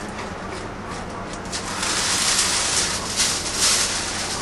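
Aluminum foil being pulled off the roll in its box, rustling and crinkling. The crackle grows louder about a second and a half in.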